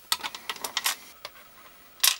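Small screws clicking as they are handled and dropped into the screw holes of a Gotek floppy drive emulator's plastic case: a quick run of light clicks in the first second, then one more a little later.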